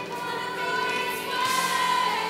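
Children's choir singing with a woman's voice among them, holding long notes and moving to a new note about one and a half seconds in.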